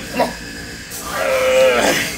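A man groaning with strain under a heavy incline dumbbell press: one long held vocal note that starts about a second in and breaks and falls away near the end.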